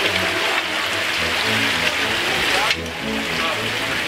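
Shallow stream running over rocks, a steady rush of water, with background music and voices under it.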